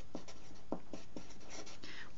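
Marker pen writing a word on paper: a quick run of short strokes over a faint steady hiss.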